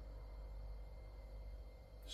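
Quiet room tone: a faint steady low hum and hiss, with no distinct sound standing out.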